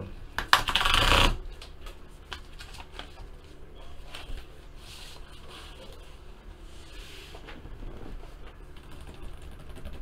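Paper envelope being torn open, with a loud rip about half a second to a second in, followed by quieter rustling and small clicks as a sheet of paper is slid out and handled.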